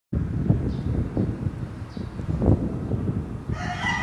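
Low rumbling with irregular knocks, then a karaoke backing track's instrumental intro begins about three and a half seconds in, with held notes.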